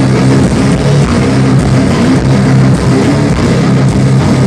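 Live heavy rock band playing loud, an instrumental stretch of distorted electric guitar riffing over drums, recorded from within the crowd.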